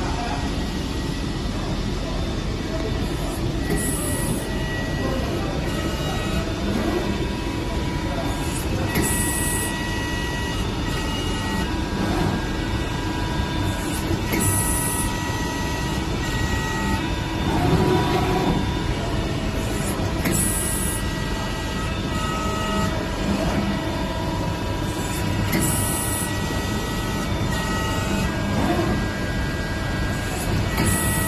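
CNC press brake running, a steady mechanical drone with a short hiss that recurs about every five to six seconds.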